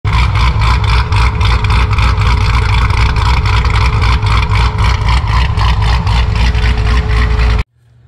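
Car engine running loud and steady with a fast, even pulse, cut off abruptly near the end.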